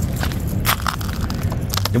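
Crackling and clicking of a thin plastic water bottle being handled and picked up off a pile of stones, with scuffs on gravel, in a run of many short, similar clicks.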